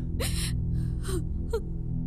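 A woman sobbing: a few short, gasping breaths with a falling catch in the voice, over low, sustained background music.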